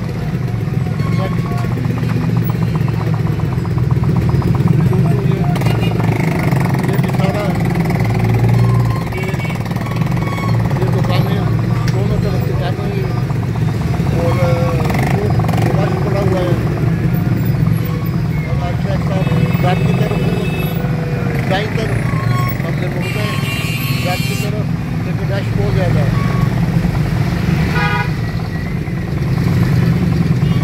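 Small motorcycle engine running steadily underneath a rider moving slowly through street traffic, with other motorcycles and a motorcycle rickshaw close by.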